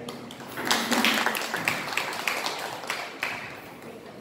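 Audience clapping: a short burst of scattered applause that starts about half a second in and dies away near the end.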